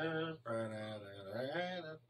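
A low male voice drawing out long, steady, chant-like tones without words: a short one, then a longer one that dips and rises in pitch near its end.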